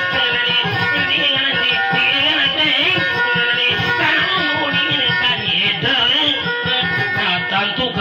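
Acoustic guitars plucked together, playing a continuous folk accompaniment for a Visayan dayunday.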